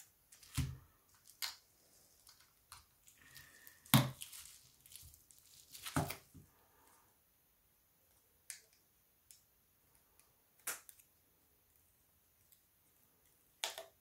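Irregular small clicks and taps of a smartphone's plastic and metal parts being handled and pressed into place during reassembly. The loudest knocks come about four and six seconds in.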